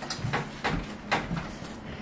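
A few light knocks and scrapes of handling at a table, as a cardboard box is set down and moved.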